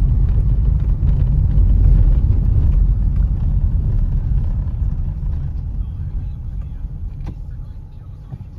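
Car cabin road noise: a low rumble of engine and tyres on the street, fading steadily in the second half as the car slows behind a braking car at red lights, with a couple of faint clicks near the end.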